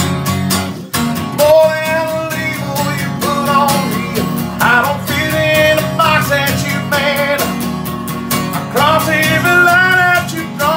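A man singing a country song over his own strummed acoustic guitar. The guitar plays alone at first, and the voice comes in about a second and a half in.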